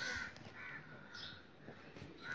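A few faint, short rasping sounds, spaced roughly half a second apart.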